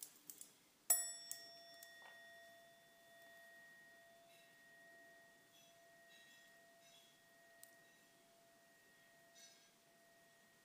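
A singing bowl struck once about a second in, ringing with several overtones and slowly fading away.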